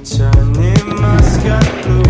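Background music with a steady beat, drum hits and a bass line.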